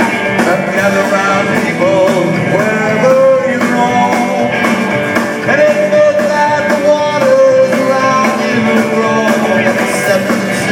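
Live rockabilly band playing loudly: twangy Telecaster electric guitar over upright bass and a steady drum beat, heard from within the audience.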